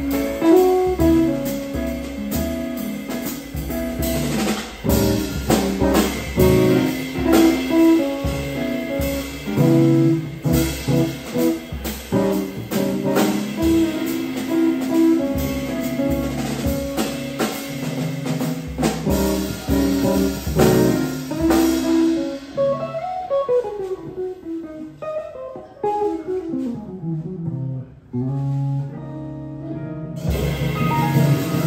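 A small jazz combo plays live: electric keyboard, guitar, and a drum kit keeping time on the cymbals. About 22 seconds in the drums drop out, and a single instrument carries on alone with falling melodic runs.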